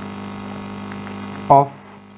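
Steady electrical mains hum, a low buzz made of even, unchanging tones, which comes up in level just at the start and holds steady.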